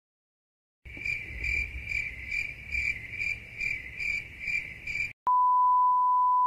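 A cricket-chirping sound effect, a regular high chirp a little over twice a second over a low outdoor rumble, which stops abruptly after about four seconds. It is followed by a steady, loud 1 kHz test-tone beep of the kind that goes with colour bars, lasting about a second and a half.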